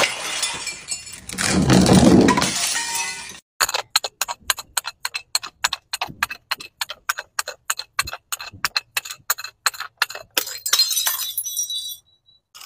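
A bottle smashing on a concrete patio, ending abruptly about three seconds in. Then a plastic container tumbles down concrete steps in a quick irregular run of sharp clicks and clatters. Near the end the clatter thickens as small beads spill out and bounce across the steps.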